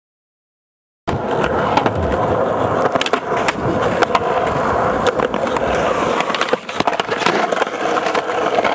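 Skateboard wheels rolling on concrete: a steady rumble, broken by scattered clicks and knocks from the board. It starts suddenly about a second in, out of silence.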